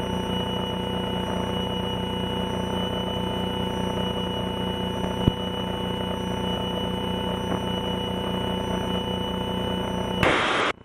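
Slingsby T67 Firefly's piston engine and propeller droning steadily in flight, heard inside the cockpit, with one short click about five seconds in.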